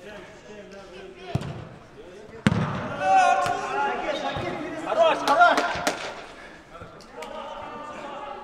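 A football struck with a sharp thud about two and a half seconds in, after a softer knock a second earlier, followed by men's voices calling out across the pitch.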